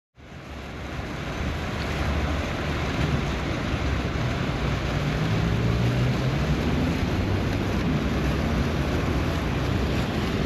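A small fountain jet splashing steadily into a shallow pool, a continuous rushing of water over a low rumble. It fades in over the first couple of seconds.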